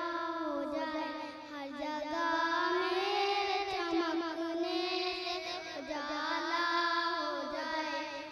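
Young girls singing a poem into a microphone through a sound system: a melodic, chant-like recitation with long held, gliding notes and a short breath pause about a second and a half in.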